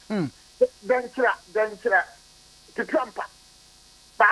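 A man talking in short phrases with brief pauses, over a faint steady electrical hum.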